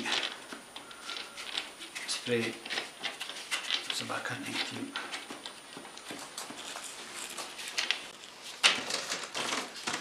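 Light metal clicks and handling of an adjustable wrench on the brass flare nuts of an air conditioner's copper refrigerant pipes, under low, indistinct talk, with a brief louder noise near the end.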